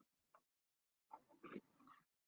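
Near silence, with faint, short muffled sounds from about a second in.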